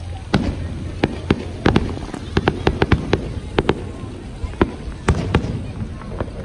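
Fireworks display: aerial shells bursting in a rapid, irregular series of sharp bangs, some coming in quick clusters.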